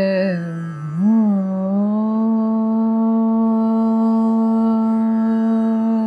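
A woman singing in Indian classical style: a short gliding, ornamented phrase, then one long steady held note from about two seconds in, cutting off just after the end.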